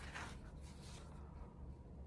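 Faint rustle of a sticker book's paper page being turned by hand, brief, about a quarter second in, over a low steady room hum.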